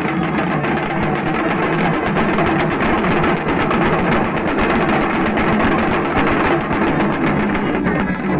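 Several large rope-laced hand drums beaten together in a fast, continuous rhythm by procession drummers.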